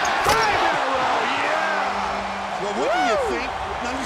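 Basketball court sounds: a sharp ball bounce about a third of a second in, then sneakers squeaking on the hardwood floor in short rising-and-falling squeals, the loudest about three seconds in, over steady arena noise.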